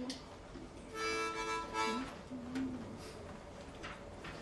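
Diatonic harmonica in a neck holder blown in two short chords about a second in, tried out before the song starts.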